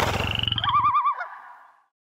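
Network end-card sound logo: a low, fast, croak-like rattle, joined about half a second in by a warbling, trilling tone. Both fade out near the end.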